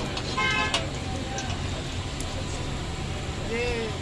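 A vehicle horn toots briefly about half a second in, over steady street noise and a low hum. A short voice rises and falls near the end.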